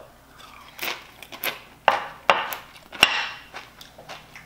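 Tostitos Hint of Lime tortilla chip loaded with dip being bitten and crunched: a few sharp, crackly crunches, with a sharper knock about three seconds in as the ceramic bowl is set down on the counter.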